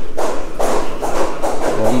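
Background music with a driving percussive beat.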